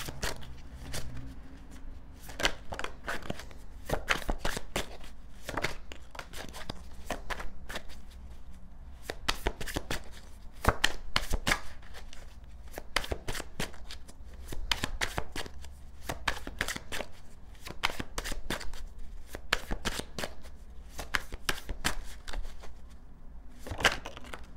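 A deck of tarot cards shuffled by hand over and over, quick runs of card flicks and taps that come and go, over a faint steady low hum.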